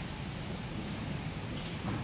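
Steady, faint hiss of room noise picked up by an open microphone in a pause between words.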